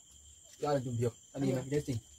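Two short phrases of a person talking over a steady, high-pitched chirring of crickets.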